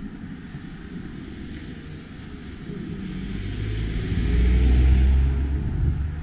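A motor vehicle with a low engine note passes close by. It grows louder from about halfway through, is loudest about five seconds in, then falls away.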